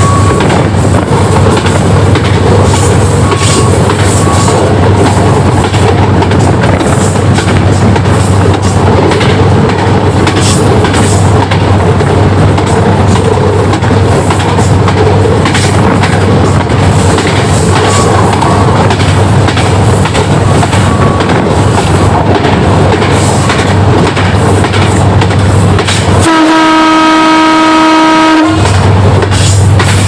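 Train running along the track: a steady loud rumble with scattered clicks of the wheels over the rail joints. Near the end the horn sounds one steady blast of about two seconds.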